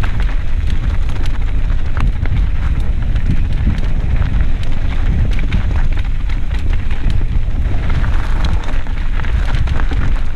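Mountain bike rolling fast down a dirt singletrack: wind buffeting the action-camera microphone as a steady low rumble, with tyres crunching over dirt and loose stones and many scattered clicks and rattles from the bike.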